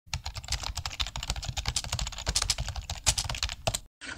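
Rapid keyboard typing: a fast, irregular run of clicks that cuts off abruptly just before the end.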